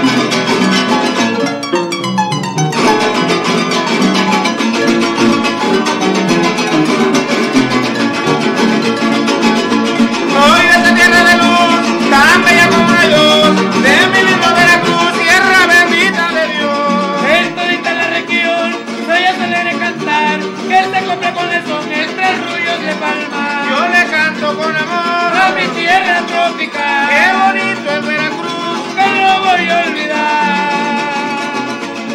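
Son jarocho played live on a jarocho harp and small jarocho guitars, strummed and plucked at a lively pace. A male voice comes in singing about ten seconds in and carries on over the instruments.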